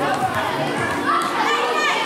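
Children shouting and calling out to one another during an indoor handball game, many voices overlapping and echoing in a large sports hall. A couple of higher, shrill shouts stand out near the end.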